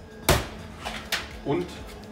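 Two sharp knocks of kitchen containers being handled on a stainless-steel counter: the first, about a third of a second in, is the louder, and a lighter one follows about a second in.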